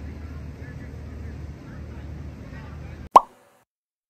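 Steady low outdoor rumble of wind and lakeshore, with faint voices in it, for about three seconds; then a single short, loud pop sound effect that drops in pitch, cutting to dead silence.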